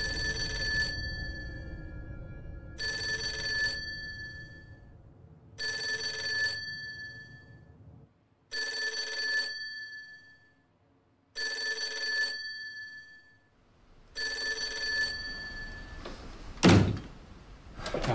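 Old wall-mounted telephone with twin bells ringing six times, each ring about a second long and about three seconds apart, then a sharp thunk near the end.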